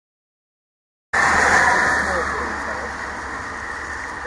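Steady rushing outdoor background noise that starts abruptly about a second in, with faint voices underneath.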